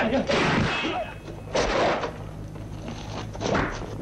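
Kung fu fight sound effects: several heavy punch and kick impacts landing a second or two apart, with the fighters' short shouts and grunts.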